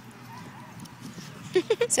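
Low outdoor background with faint distant voices, then about one and a half seconds in a woman's high-pitched voice breaks in with laughter.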